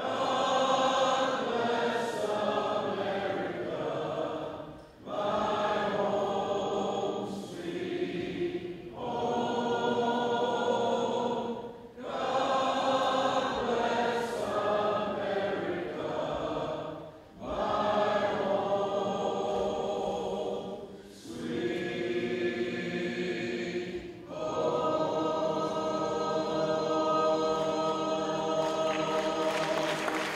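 Three men singing in harmony without accompaniment through a microphone, in phrases a few seconds long with short breaks for breath. The last phrase is held as a long, steady chord near the end.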